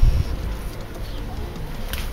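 A pigeon cooing in the background, with a low rumble at the very start that dies away within the first half-second.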